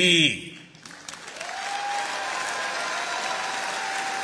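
Large indoor audience applauding, the clapping swelling up about a second in and then holding steady.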